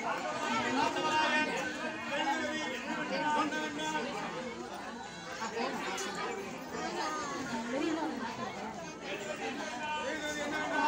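Several voices talking at once, a busy, continuous mix of chatter.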